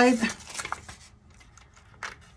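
A word trails off, then faint rustling and a few light ticks of a transparency film being handled and fitted into a cardboard picture frame, fading to quiet after about a second.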